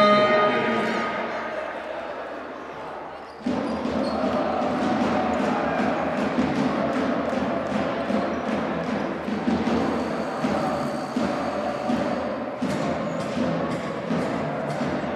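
Basketball arena sound during a stoppage. A held tone with several pitches stacked in it stops right at the start and rings away in the hall's echo. From about three and a half seconds in, music plays with crowd chatter and scattered sharp knocks, the loudest of them near the end.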